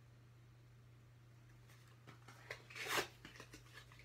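Quiet room tone with a steady low hum, then brief rustling and handling of paper cards about two to three seconds in, loudest near the three-second mark.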